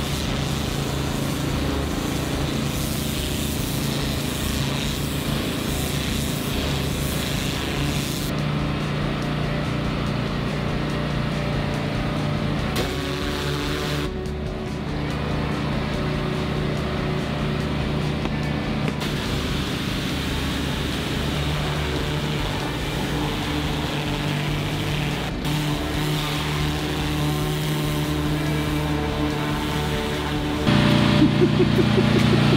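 Gas-engine pressure washer running steadily, with the hiss of its turbo-nozzle spray hitting the concrete. The spray hiss drops away for two spells of several seconds near the middle while the engine keeps running.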